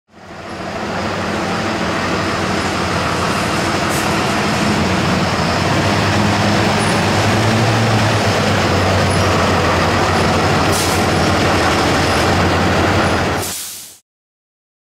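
Street sweeper truck's diesel engine running steadily, fading in at the start and fading out near the end.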